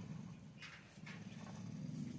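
Water buffalo close at hand, making a steady low sound with two short noisy puffs about half a second apart near the middle.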